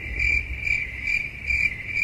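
Cricket chirping: a high, steady trill that pulses about two to three times a second and starts and stops abruptly.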